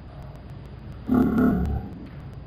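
A person's voice, muffled and echoing, heard as one short unintelligible phrase about a second in over a low steady room background.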